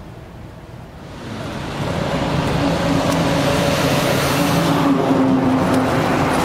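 A road vehicle's engine and tyre noise swelling up about a second in and then running loud and steady close by, in street traffic.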